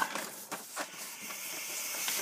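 Vinyl LP being handled and drawn out of its paper inner sleeve: a few faint taps, then from about a second in a steady sliding, rustling hiss of record against paper.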